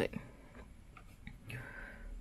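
Faint clicks and handling noise from a plastic GoPro frame case and the camera being handled in the hands.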